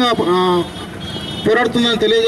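A man speaking into a handheld microphone. He pauses briefly about halfway, leaving only the steady background noise.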